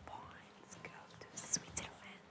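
Quiet whispered speech, with soft hissing consonants that are loudest about one and a half seconds in.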